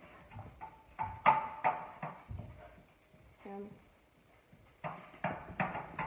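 Rough play with a Labrador close to the phone: quick knocks and scuffles in two bursts, about a second in and again near the end, with short voiced sounds mixed in.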